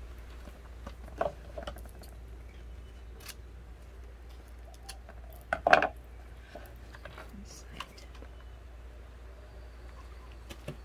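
Light handling sounds of a burlap-covered wreath frame and craft supplies on a tabletop: soft rustling with a few scattered clicks and taps, the loudest a short burst just before six seconds in, over a steady low hum.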